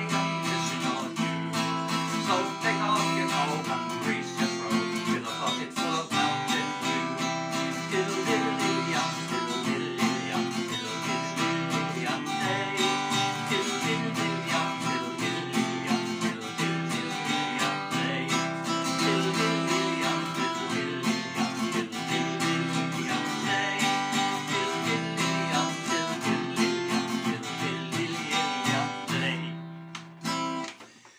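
Acoustic guitar strummed in a steady rhythm, playing the chords of a traditional folk tune; the playing stops near the end.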